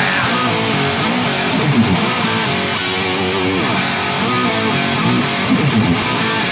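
Electric guitar playing on its own in a live rock performance, with sliding notes bent up and down and no bass or drums under it.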